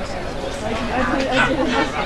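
People chatting close to the microphone, conversational talk with no other distinct sound.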